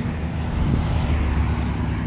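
Low rumble of road traffic, a little louder in the middle.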